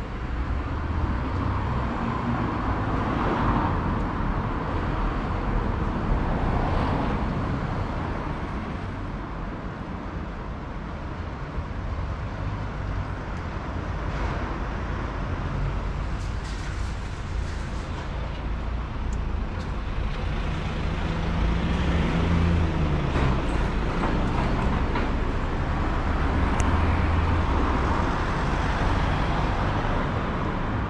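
Urban road traffic: a steady hum of car traffic with vehicles passing, swelling and fading. An engine drone is held and then drops in pitch about two-thirds of the way through.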